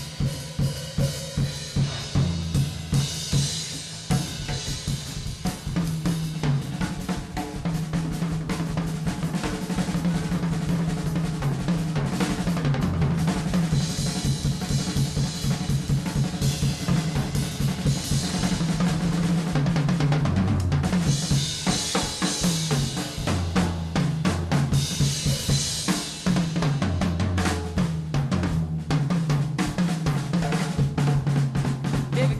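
Jazz drum kit solo: dense snare, tom and bass-drum figures, with cymbal washes swelling at about three seconds in, around fourteen seconds and again from about twenty-one to twenty-six seconds. An upright bass holds a low repeating line underneath.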